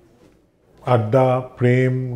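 A man singing in a low voice, holding long notes at a nearly steady pitch, which starts about a second in after a short pause.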